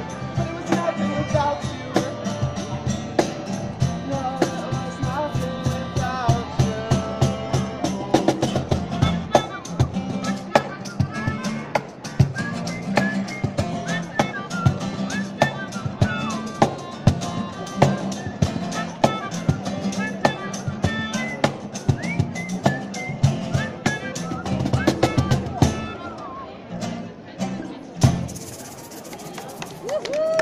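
Acoustic street band playing a song: a cajón keeps a steady beat under strummed acoustic guitars and singing. The music thins out near the end, closing with one last strong hit.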